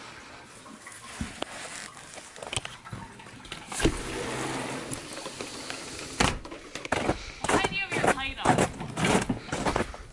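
Rustling and handling knocks, then a sharp click about six seconds in as a door handle is worked and the door is opened. Indistinct voices follow near the end.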